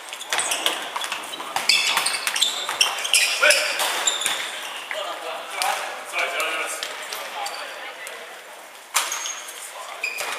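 Futsal being played in a reverberant sports hall: sneakers squeaking in short, high chirps on the wooden floor, the ball thudding off feet and the floor, and players calling out, with a sharp kick about nine seconds in.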